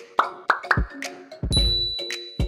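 Cartoon logo intro jingle: a run of quick popping sound effects that each drop steeply in pitch, over short bright musical notes, with a high held ding coming in about a second and a half in.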